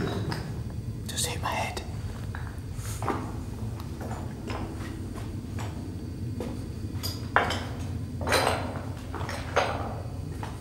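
Footsteps on a rubble-strewn tunnel floor, with irregular knocks, scrapes and clinks of carried gear and low murmured voices; the sharpest knocks come in the last few seconds.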